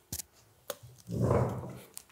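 A few light clicks, then a short scraping, creaking noise lasting under a second as a person sits down on a chair.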